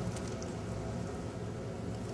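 Cake donuts and donut holes frying in hot shortening in an electric deep fryer: a steady, quiet sizzle with a few faint crackles near the start.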